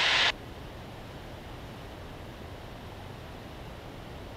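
A radio transmission cuts off just after the start, leaving the steady engine and airflow noise of a Cessna in flight, heard through the headset intercom as an even hiss with a low rumble. It fades out near the end.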